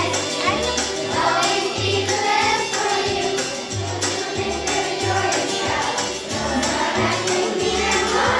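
Children's choir singing a song over instrumental accompaniment, with a bass line and a steady percussion beat.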